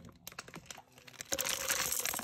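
Light clicks and crackles as the dry instant-noodle block and its plastic wrapper are handled in a metal pan. They are sparse at first and denser and louder in the second half.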